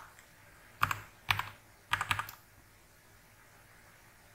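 Computer keyboard being typed on: a few sharp keystrokes in three short runs in the first half.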